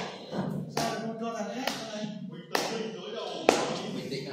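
Four sharp taps at an even, unhurried beat, a little under one a second, over faint voices from the TV broadcast.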